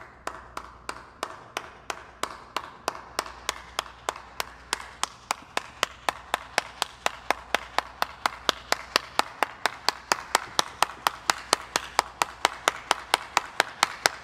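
One person clapping hands in a steady rhythm that gradually speeds up, from about two and a half claps a second to about four.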